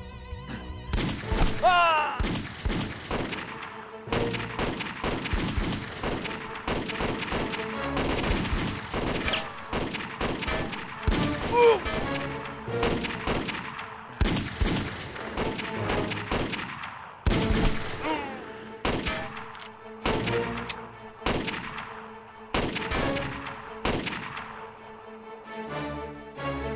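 Gunfire in a firefight: rapid single shots and bursts of automatic rifle fire, many shots a second throughout, with background music underneath.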